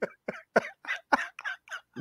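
A man laughing in a run of short breathy bursts, about four a second.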